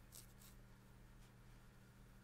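Near silence with a low steady hum, broken by faint rustles of a glossy paper booklet page being turned: a double rustle at the start and a single one a little past a second in.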